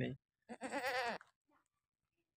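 A goat bleats once, a short quavering call about half a second in.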